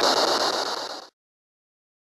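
Steady static hiss that starts abruptly and cuts off about a second in, giving way to dead silence at an edit.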